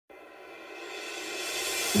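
Background music opening with a rising swell of hiss-like noise, like a reversed cymbal, growing steadily louder, with low notes coming in right at the end.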